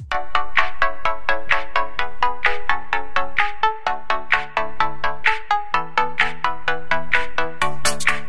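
Background music: an electronic track of quick, evenly spaced bell-like melodic notes over a steady beat.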